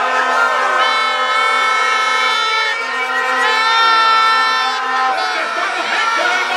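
Several plastic horns blown by a crowd, long overlapping held notes over crowd noise, with two strong long blasts, one about a second in and one about halfway through.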